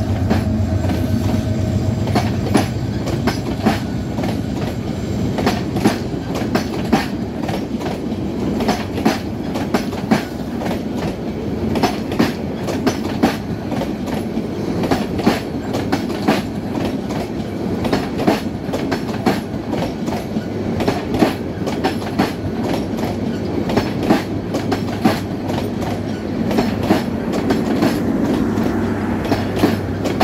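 A diesel locomotive's engine hum fades in the first couple of seconds as an intercity passenger train's coaches roll past, their wheels clacking steadily over the rail joints. Near the end a low hum returns as the train's power car, with its generator, goes by.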